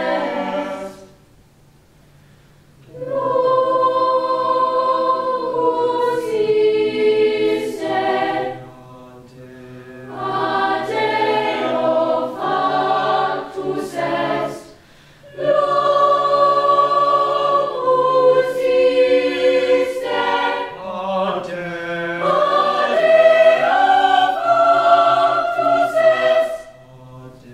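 A mixed youth choir singing long held chords in harmony, in phrases broken by short pauses, the first of about two seconds shortly after the start.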